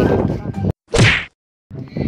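A short whoosh effect at an edit cut, one quick sweep falling from high to low pitch. It sits between two stretches of dead silence where the audio has been cut.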